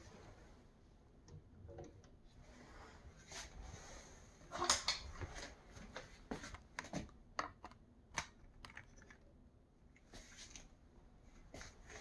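Handling noise: scattered light plastic clicks and rustles as a long-handled grabber tool picks the plastic snap trap with the caught mouse out of the drawer. The clicks come thickest and loudest in the middle seconds.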